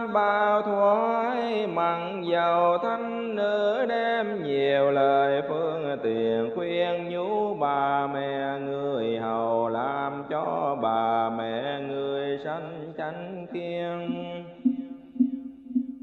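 Vietnamese Buddhist sutra chanting: a voice intoning in long melodic phrases that slide up and down, with accompanying music.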